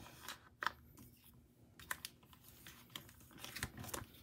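Soft crinkling of clear plastic binder pocket pages with scattered light ticks and clicks as photocards are slid into the sleeves and a page is turned.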